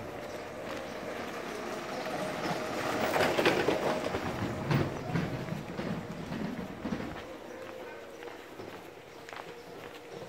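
A motorcycle passing close by on a cobbled street, growing louder to its peak a few seconds in and then fading away, over a steady faint hum.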